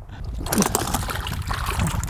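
Splashing and sloshing in shallow water at the bank's edge as a crappie that has come off the hook is grabbed by hand. The sound is irregular and rises about half a second in.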